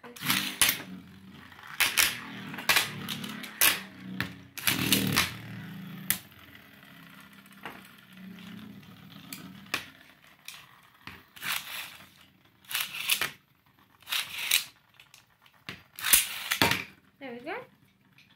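Metal Beyblade spinning tops launched onto a plastic tray: a low steady whir of spinning for the first half, with sharp clacks and clinks scattered all the way through.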